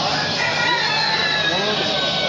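A rooster crowing, one long call of about a second and a half that falls slightly in pitch at the end, over background market chatter.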